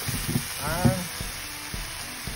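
Sliced onions and mushrooms sizzling on a hot Blackstone flat-top griddle as they caramelize, with a short vocal sound under a second in.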